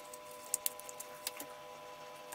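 Faint clicks and light taps from handling a small converter circuit board, its plastic display housing and ribbon cables. Underneath is a faint steady chord of several held tones.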